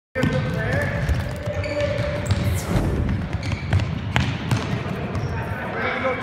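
Soccer balls being dribbled and kicked on a hard gym floor, a scatter of irregular thuds and bounces from several players at once, with children's voices in the background.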